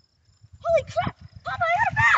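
A child's excited high-pitched cries, three short ones starting about half a second in, as a fish takes the line.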